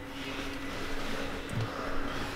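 Low background noise: a steady hiss with a faint steady hum, and a soft brief knock about one and a half seconds in.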